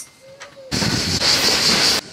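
A loud, steady hiss of escaping air from the train, typical of its air brakes releasing. It starts suddenly under a second in and cuts off abruptly.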